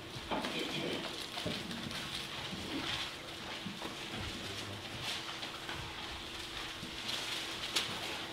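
Scattered soft rustles and small clicks of paper as Bible pages are turned throughout the room, over a faint steady hum.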